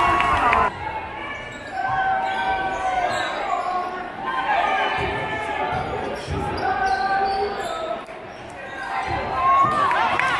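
A basketball being dribbled on a hardwood gym floor, with voices from a gymnasium crowd calling out over it.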